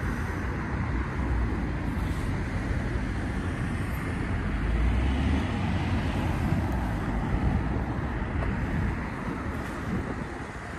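Road traffic noise, a steady rumble that swells about five seconds in as a vehicle goes past.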